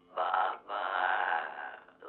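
An eerie, drawn-out voice heard through a telephone earpiece, thin and narrow-sounding with no deep or bright end, in a short stretch and then a longer one.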